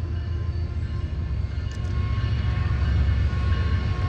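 BNSF GE ES44AC diesel freight locomotive approaching, a steady low rumble slowly growing louder.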